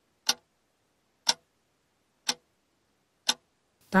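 Clock-tick sound effect of a quiz countdown timer: one short, sharp tick each second, four ticks in all, over silence.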